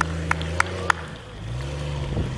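Lifted Jeep Cherokee XJ race truck's engine running under load on a dirt course, with a sharp tick about three times a second. About a second in the engine drops off, then it revs back up about half a second later.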